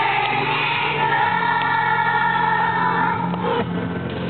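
Young children's choir singing together, holding one long note that ends about three and a half seconds in, over a steady low accompaniment.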